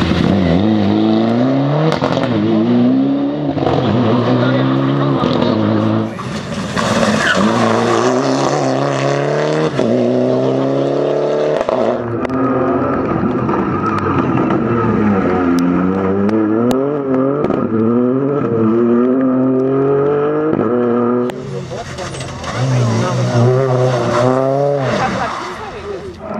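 Rally cars taken hard through a tight corner one after another, a Mitsubishi Lancer Evolution among them: engines revving up and falling away through gear changes, over and over. The sound cuts abruptly from one car to the next several times.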